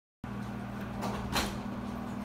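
Overhead projector's cooling fan running with a steady low hum, starting just after the recording begins. A brief swish cuts across it about a second and a half in, with a fainter one just before.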